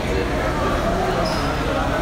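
Indistinct chatter from a group of people walking through a concrete arena tunnel, with footsteps over a steady low rumble.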